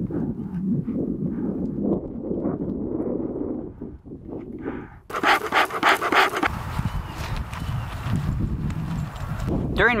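A bee smoker being lit: its bellows puffing air in repeated strokes while dry fuel is packed in, with a louder burst of rustling and crackling about five seconds in.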